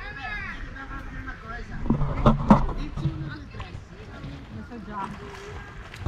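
People's voices on a beach, with a steady low rumble of wind on the microphone underneath.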